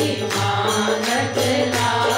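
A woman singing a Hindi devotional bhajan to harmonium accompaniment, with a steady percussion beat.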